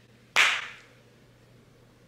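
A single sharp hand clap, fading quickly.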